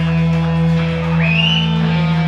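Heavy metal band playing live, heard from the crowd: distorted electric guitars and bass hold a low droning note, and about a second in a high note slides up and holds.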